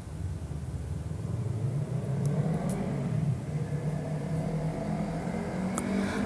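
A low rumble that builds a little over the first two seconds and then holds steady, with a few faint clicks.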